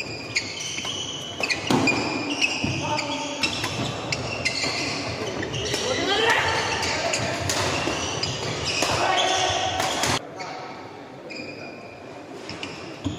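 Badminton doubles rally in a large echoing hall: rackets striking the shuttlecock, shoes squeaking on the court, and players' voices. The rally stops suddenly about ten seconds in.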